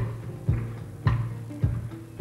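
Live blues band playing: the drum kit strikes a steady beat about twice a second over a held low note.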